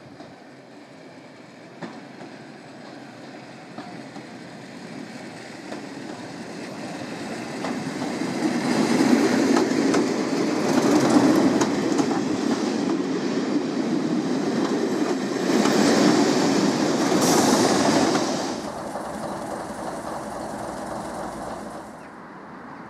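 First-generation diesel multiple unit running past, growing louder over the first eight seconds, with its wheels clicking over rail joints, then falling away about eighteen seconds in.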